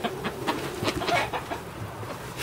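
Hens clucking close by, a run of short clucks and calls.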